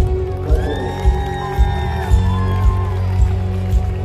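Live rock band playing through a large outdoor PA: drums, electric guitars and bass, with the kick drum beating about twice a second. A high melodic line carries the tune from about half a second in to about three seconds in, with no lead vocal.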